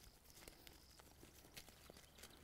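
Near silence with a few faint, scattered ticks of dry soil being handled between the fingers.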